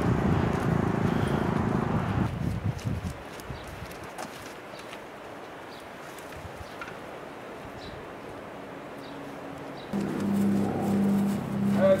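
Footsteps of a man and a dog on a concrete driveway, short scattered clicks of steps. A loud rushing noise fades out about two seconds in, and a steady low hum starts near the end.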